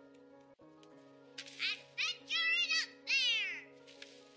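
Film score holding sustained notes, joined in the middle by a run of loud, high-pitched squealing cries that slide up and down in pitch.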